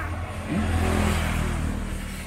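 An engine revving up: its pitch rises about half a second in, then holds and grows louder for about a second before easing off, over a steady low hum.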